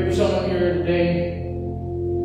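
A man's voice intoning in a sung, chant-like delivery over steady, held organ chords with a deep bass note.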